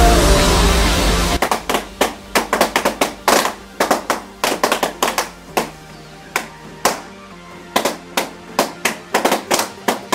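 Electronic dance music cuts off about a second and a half in. Then latex balloons burst one after another in sharp, irregular pops, a few a second, as they are slashed with a knife.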